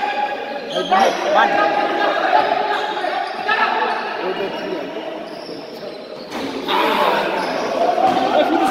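Basketball bouncing on a hard indoor court in a large, echoing hall, with voices calling across the court.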